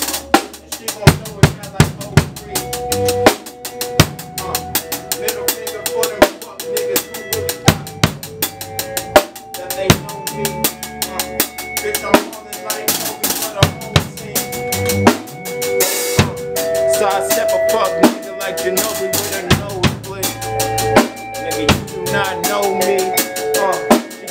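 A band playing together: a drum kit with kick, snare and cymbal hits throughout, under held electric bass and electric guitar notes.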